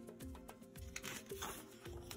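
Faint background music with soft held notes, and the soft rustle of a stiff picture-book page being turned about a second in.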